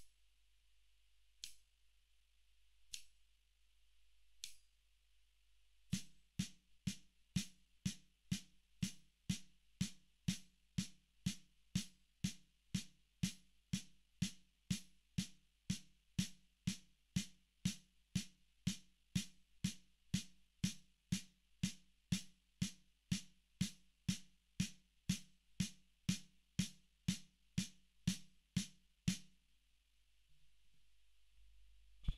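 Four clicks a second and a half apart, then a snare drum struck in slow, even alternating single strokes, about two a second: eighth-note triplets, three strokes to each beat of the count. The strokes stop just before the end.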